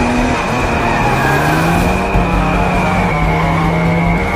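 Aston Martin DB5's engine accelerating hard, its pitch climbing and then dropping at the gear changes, about half a second in and again about three seconds in. A dramatic film score with a high held note runs underneath.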